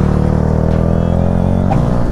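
Yamaha MT-125's single-cylinder four-stroke engine running through an Akrapovic titanium exhaust while riding, its pitch falling steadily as engine speed drops, then changing abruptly near the end.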